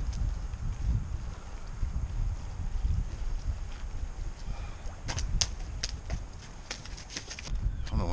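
Wind buffeting the microphone, a steady low rumble, with a short irregular run of sharp clicks and taps about five seconds in.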